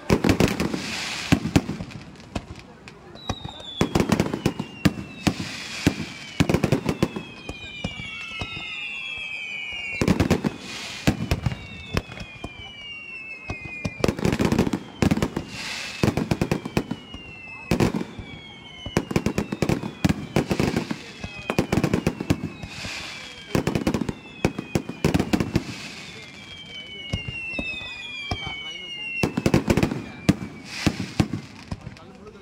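Fireworks going off: clusters of bangs and crackling every couple of seconds, with many whistles that fall in pitch in between.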